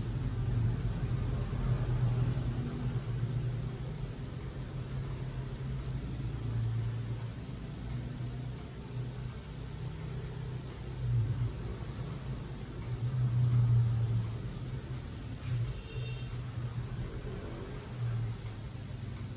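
Steady low rumble of background noise that swells several times, loudest a little past the middle, with a faint short high-pitched sound near the end.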